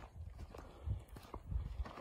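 Footsteps of a person walking on a trail: a few soft, irregular thuds and light clicks.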